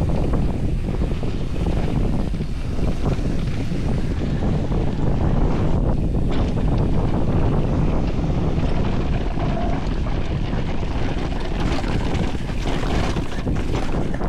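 Wind rushing over the camera microphone of a mountain bike descending fast on a rocky dirt trail, with the bike's frame, chain and tyres clattering and rattling over the rough ground.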